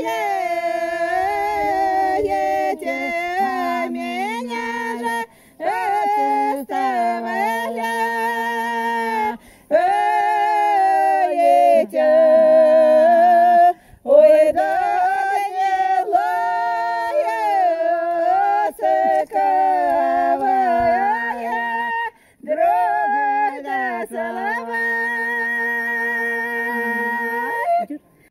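Two women singing an unaccompanied village folk song together in a loud open-throated style, in long held phrases with short pauses for breath between them.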